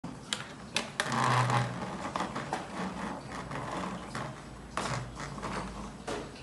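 Plastic clicks and knocks from a child's pink toy vanity table being handled: several sharp clicks within the first second and another near the end, with a short low hum about a second in.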